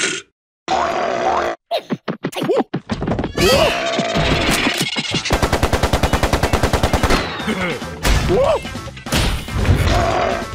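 Cartoon soundtrack of comic sound effects over music, with short grunting character vocalizations. In the middle comes a fast, even volley of pops at about ten a second, like a burst of machine-gun fire.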